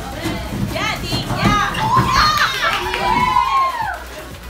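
A group of women shouting and shrieking excitedly, high-pitched cheering that builds from about a second in, urging someone on in a timed race.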